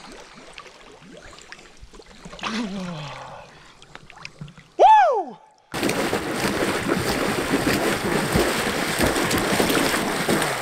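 Quiet water lapping at the surface, broken just before the middle by a short, loud pitched sound that rises and then falls. After an abrupt change there is steady splashing from a swimmer kicking through the water and pushing a floating hard rifle case.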